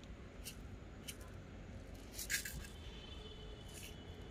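A small, nearly empty plastic bottle shaken out over potted soil, giving a few light, scattered rattles and clicks, with a louder cluster about two seconds in.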